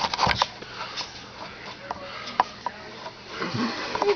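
Rustling and scattered knocks from handling the camera, with a short, indistinct voice sound near the end.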